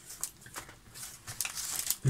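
Paper rustling and crinkling as a handful of used postage stamps is pulled out of a paper envelope, in short, faint, scattered crackles.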